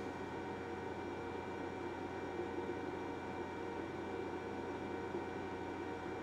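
Steady background hiss with a faint constant hum (room tone), with no distinct events.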